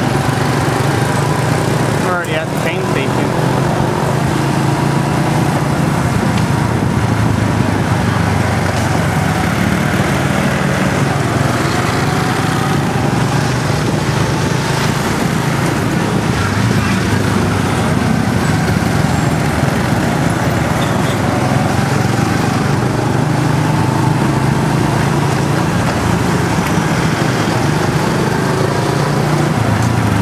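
Small motorcycle engine running at low road speed in slow traffic, a steady drone whose pitch rises and falls with the throttle, over the hum of surrounding street traffic.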